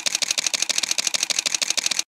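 Camera shutter firing in a rapid continuous burst, about ten sharp clicks a second, cutting off suddenly at the end.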